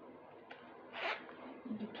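Zipper of a small fabric cosmetic pouch being pulled, one short zip about a second in.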